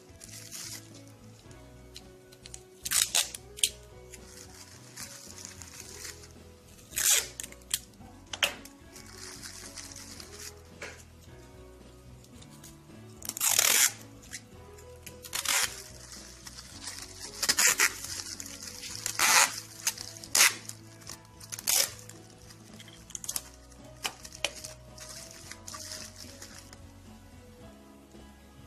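Sticky tape ripped off the roll in about a dozen short, loud pulls, with a plastic bag crinkling, as a bag is taped shut around a seed tray, over steady background music.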